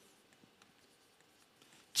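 Faint strokes of writing on a blackboard.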